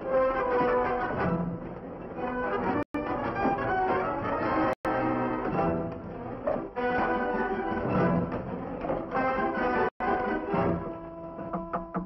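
Orchestral film score playing, with sustained strings and brass. The sound cuts out for an instant three times.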